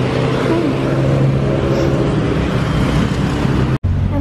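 Road traffic close by: a motor vehicle's engine hums steadily, its pitch rising briefly about half a second in, over the hiss of the street. The sound cuts off abruptly just before the end.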